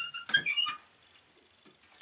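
Cast-iron wood-burning stove's door being shut and its metal handle latched: a few quick metallic clicks and clinks with short ringing tones, all within the first second.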